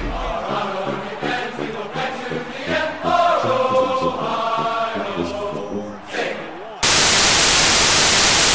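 Chanting voices for most of the clip, then loud television static hiss cuts in suddenly near the end and holds steady.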